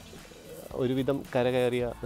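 A man speaking in Malayalam after a short pause, his voice starting less than a second in.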